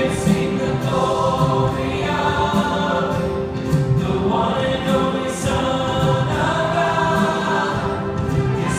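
A church choir and worship singers singing a gospel worship song together, backed by a live band with acoustic guitar.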